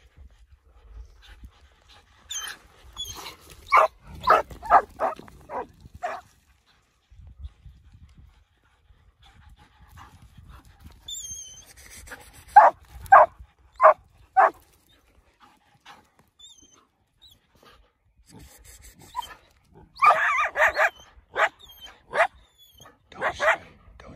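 Dogs barking in short rapid volleys while fighting coyotes: a run of about six barks a few seconds in, four evenly spaced barks about halfway, and another flurry near the end, with a few high thin yelps in between.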